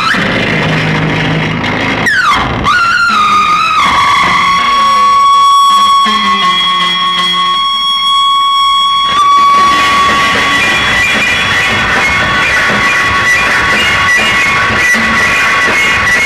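Loud live noise music from a tabletop rig of effects boxes and patch cables worked by hand: a quick downward pitch sweep about two seconds in, then a steady high tone held for several seconds over harsh noise, giving way near the middle to dense shrill noise.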